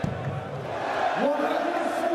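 Arena crowd noise at a darts match, a low murmur with a dull thump at the very start. A man's voice comes in about a second in and holds on.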